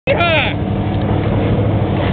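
Engine of a vehicle towing a sand surfer, running with a steady low drone while under way. A short voice sound with a bending pitch comes right at the start.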